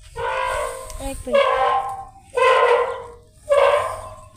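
A young pet monkey giving four short, high-pitched calls in a row, each under a second, with brief gaps between.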